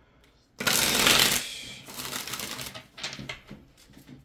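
A deck of cards being shuffled by hand. It starts with a loud burst of card noise about half a second in, then continues as softer, ragged shuffling with small ticks.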